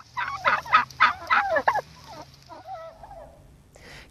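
Kandıra turkey toms in a flock gobbling: a quick run of loud warbling gobbles in the first two seconds, then fainter calls that die away.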